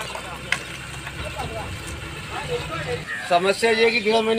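A vehicle engine running with a low, steady rumble, with faint voices behind it. About three seconds in the rumble drops away as a loud voice starts talking close by.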